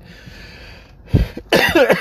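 A man coughing twice, once about a second in and again, longer, near the end, after a breath in.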